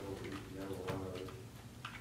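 Faint speech: a man's voice speaking low and steadily.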